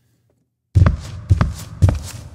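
Sampled foley footsteps played from a keyboard: after a brief silence, three steps about half a second apart, each with a low thump from a layered barefoot-on-cement sample.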